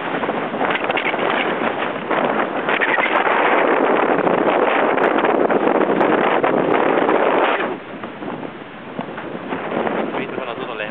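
Strong wind buffeting the microphone over open water, a loud even rushing that is heaviest through the middle and eases off suddenly near the end.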